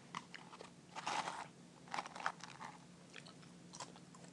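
Faint, irregular crunching and clicking of a person chewing crunchy food close to the microphone, in short bursts about a second and two seconds in.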